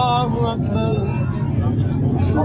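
A man singing an unaccompanied Urdu nasheed of mourning, a held note ending just after the start before a short pause between lines, over a steady low rumble.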